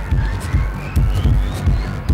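Electronic collage soundtrack: a throbbing bass pulse, about four beats a second, under a single tone that rises steadily in pitch.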